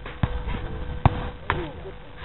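A soccer ball being kicked during play: dull thumps about a quarter second in and just after a second, then a sharper knock about a second and a half in, over a faint steady hum.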